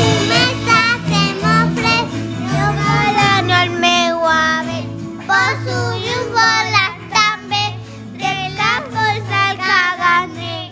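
A Christmas carol: a child's singing voice carrying the melody in short phrases over an instrumental backing with a steady bass line.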